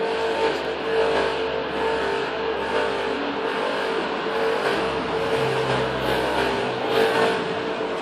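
Car engines running as cars drive along a race circuit's pit lane, with the sound swelling briefly near the end.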